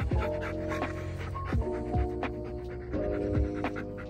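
A Siberian husky panting with its mouth open, over background music of steady held notes and a kick-drum beat.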